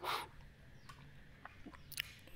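A short sniff through the nose at the start, then a few faint clicks in an otherwise quiet room.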